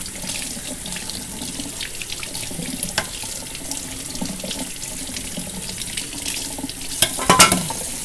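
Kitchen tap running water into the sink as rice is rinsed off, with the water draining through a plastic sink strainer. A few sharp clatters near the end.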